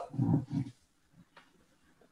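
A man's low voice trailing off in the first half-second or so, then quiet with two faint taps.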